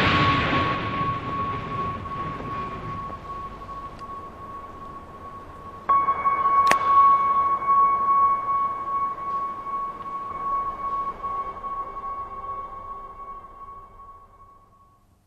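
The rumble of an on-screen explosion dies away over the first few seconds. Under it, a sustained high ringing tone in the score swells louder about six seconds in, and a single sharp crack comes shortly after.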